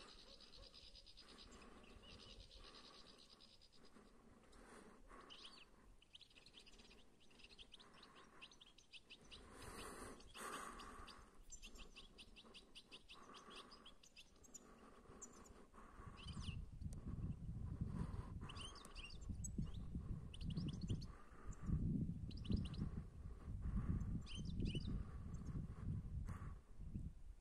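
European goldfinches twittering and calling, a run of short rapid trills repeated throughout. From about two-thirds of the way in, a louder low rumbling noise comes and goes in gusts under the calls.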